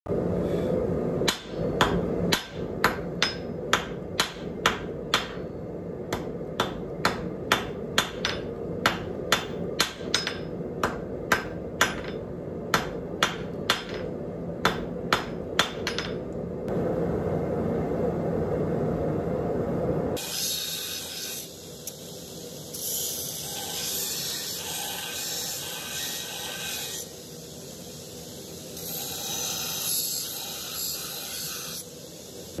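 Hand hammer striking a hot steel rod on an anvil, about two blows a second, for the first sixteen seconds or so. After a short stretch of steady rushing noise, steel is ground on a grinder from about twenty seconds in: a hissing grind that swells and fades with each pass.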